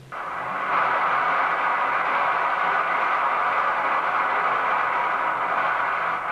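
A loud, steady hiss of noise with no pitch, starting suddenly just after the organ music stops.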